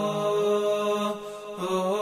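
Background music: a slow vocal chant with long held notes that step up and down in pitch.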